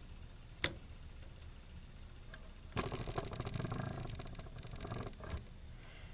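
Small handling sounds as a ping sensor's pins are pressed down into a plastic breadboard: one sharp click about half a second in, then a couple of seconds of faint crackling and scraping from about three seconds in.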